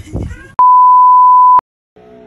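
A loud, steady, high-pitched electronic beep at one unchanging pitch, lasting about a second. It is a bleep added in editing. It starts about half a second in and cuts off abruptly into dead silence.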